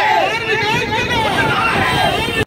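A crowd of marchers shouting slogans, many voices overlapping.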